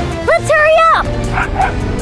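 Cartoon dog's voice barking twice about half a second in, a short bark then a longer one that falls off at the end, over background music.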